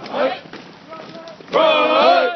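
Military running cadence: a short shouted call near the start, then the platoon chanting back loudly in unison from about a second and a half in.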